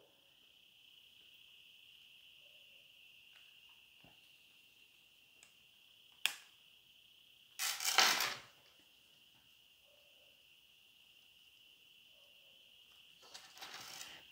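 Mostly near silence under a faint steady high hiss, broken by a sharp click about six seconds in and a brief rustle about a second later, from hands handling a leather card wallet.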